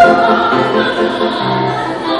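A woman singing an Italian art song in a classical operatic style with piano accompaniment, with a loud high note at the start.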